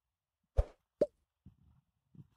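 Two short pop sound effects about half a second apart, the second with a quick drop in pitch: the click-and-pop effects of an animated like-and-subscribe button.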